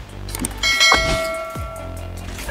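A single bell-like chime rings out about half a second in and fades slowly, over background music.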